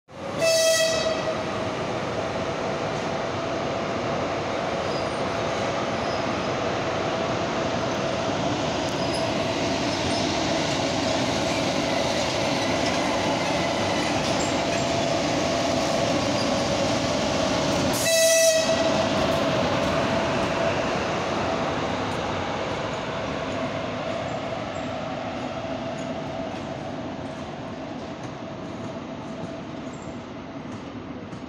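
ChS4 electric locomotives moving a passenger train past at low speed: a steady rolling noise with a steady whine, fading over the last several seconds. The locomotive horn sounds two short blasts, one right at the start and another about 18 seconds in.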